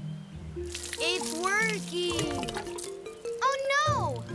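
Cartoon background music with high, sliding, voice-like sounds, but no words, and a brief watery whoosh a little over half a second in.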